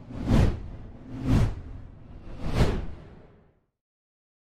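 Three whoosh sound effects about a second apart, each swelling and fading with a deep low rumble beneath, for an animated logo transition; the last one dies away about three and a half seconds in.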